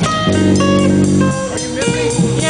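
Live jazz-funk trio of electric guitar, bass and drums playing, the guitar running a line of single notes with a sustained low chord for about a second early on.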